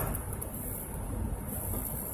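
Steady low road and engine rumble inside the cabin of a moving vehicle at highway speed.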